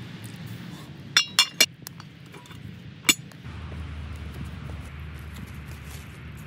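A cast iron Dutch oven lid, handled with a metal lid lifter, clinks against the pot as it is set back on: three quick ringing clinks about a second in, then one more near the three-second mark.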